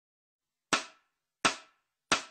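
Two sharp percussive hits about three-quarters of a second apart, each with a short ringing tail. They are the slow opening beats of a count-in that leads into a song.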